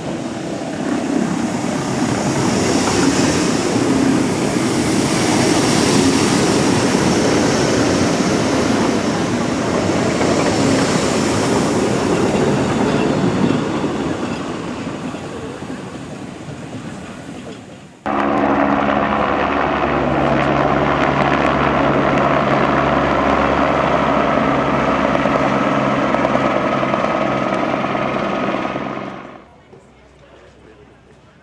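Jungfraubahn electric rack-railway train running past, its wheel and running noise rising over the first couple of seconds and fading away over several seconds. About two thirds of the way in the sound cuts to a steady electric hum made of several held tones, which stops suddenly near the end.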